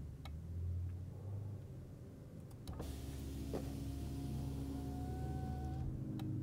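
2014 Chevrolet Cruze passenger power-window motor, commanded from a scan tool, running with a low hum as it drives the glass up. A click comes about two and a half seconds in, then the motor runs again, driving the glass down, with a steady low hum and a faint whine.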